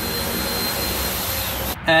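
Steady rushing noise, like a fan or blower running in a workshop, with a faint thin high whine in it. It cuts off suddenly near the end.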